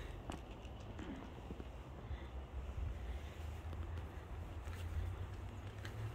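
Faint outdoor background with a steady low rumble and a few soft, irregular taps of footsteps on a concrete walkway.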